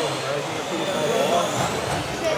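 Small electric motors of 2WD radio-controlled racing cars whining around the track, rising in pitch as a car accelerates near the end.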